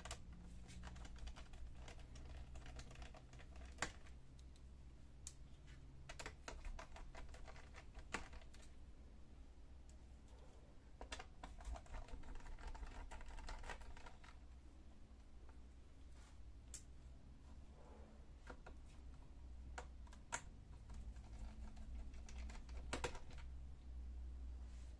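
Small screwdriver working screws out of a laptop's plastic bottom panel: faint scattered clicks and short runs of little ticks and scrapes, over a steady low hum.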